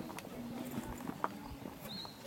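A few sharp clicks and knocks, one louder about a second and a quarter in, over faint background voices.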